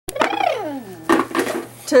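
A young child's voice sliding down in pitch in one drawn-out sound, followed by two sharp clatters of hard objects knocking together, then a voice starting to say "two" at the very end.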